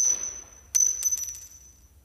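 A small metal ring dropped onto a hard floor. It strikes once, then again under a second later and bounces in quickening clicks, each hit leaving a high ringing tone that fades.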